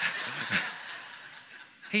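Soft chuckling laughter, breathy and without words, that fades away over about a second and a half.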